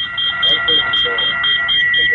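Prerecorded electronic 'scanning' sound played through a smartphone's speaker: a steady high electronic tone with a higher beep pulsing rapidly over it, meant to mimic a card-scanning device.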